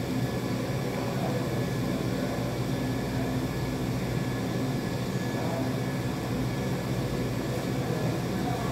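Steady low mechanical hum with a faint, thin high tone above it, unchanging throughout.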